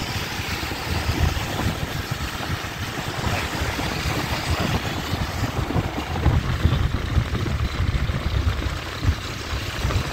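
Continuous street traffic of many motorbikes on a wet road, heard from a moving motorbike, with wind buffeting the microphone in uneven low gusts.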